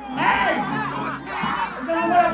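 A man shouting into a microphone over a crowd, with music playing underneath.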